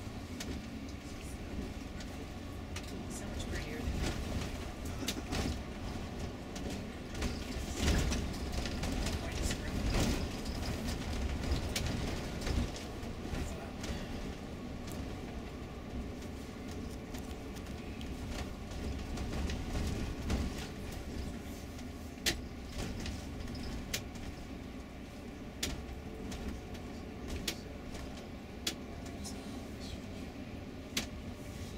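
Tour bus driving, heard from inside the cabin: a steady low engine and road rumble, with frequent small clicks and rattles from the bus interior.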